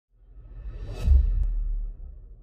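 Logo-intro sound effect: a whoosh swells over the first second and lands about a second in on a deep low boom, which rings on and fades.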